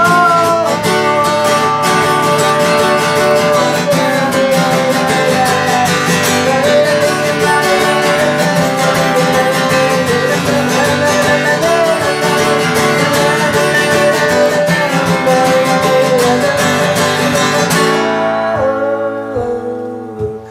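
A man singing with a strummed steel-string acoustic guitar. Near the end the strumming stops and the sound falls away.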